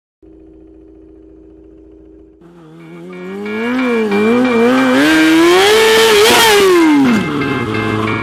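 A steady low hum for about two seconds, then a motorcycle engine revs in short up-and-down blips, climbs to a long high peak and drops away near the end. It is mixed with intro music and grows much louder as it goes.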